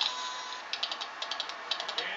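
Rapid mechanical clicking, several clicks a second, starting a little under a second in, from a ride-on singing pony toy being rocked and worked by a toddler.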